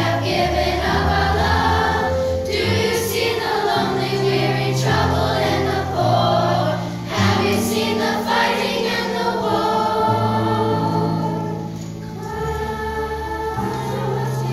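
Children's choir of fifth graders singing a two-part song, over low held accompaniment notes that change every second or two. The singing softens briefly about twelve seconds in.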